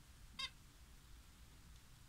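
A single short, high chirp from a Java sparrow about half a second in, with near silence around it.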